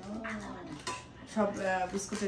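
A woman's voice with a single light metallic clink about a second in, from the lid and body of a metal biscuit tin knocking together as the tin is opened.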